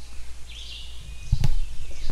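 Low thumps and handling noise as a person leans forward at a desk, with faint high chirps in the background about half a second in.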